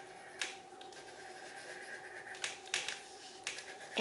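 Thick wax crayon rubbing on paper, a few faint scratchy strokes about half a second in and again in the last second and a half, over a low steady room hum.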